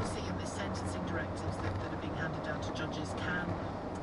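Steady road and engine noise heard inside a vehicle cabin at motorway speed, with indistinct talk running over it.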